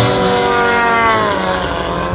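Engine and propeller of a 110-inch RC biplane flying past, a steady drone that drops in pitch a little past the middle as the plane goes by.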